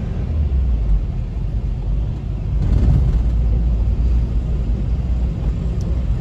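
Steady low rumble of a car driving, heard from inside the cabin, with engine and tyre noise on a wet road.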